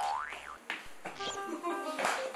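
A comic sound effect that glides quickly up in pitch and dips at the top, followed by light background music of short, bright notes at several pitches.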